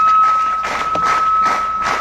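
Public-address microphone feedback: a single steady high-pitched squeal held without change, with irregular crowd noise underneath.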